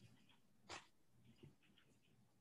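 Near silence: room tone with one brief faint noise a little over a third of the way in.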